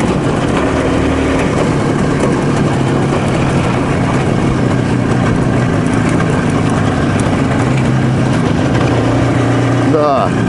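IZh Jupiter motorcycle with sidecar, fitted with a Jupiter-4 two-stroke twin engine, running under way. The engine note holds fairly steady, shifting a little in pitch as the revs change.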